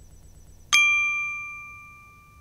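A single bright metallic chime sound effect from a news channel's logo sting. It is struck suddenly under a second in and rings on, fading slowly.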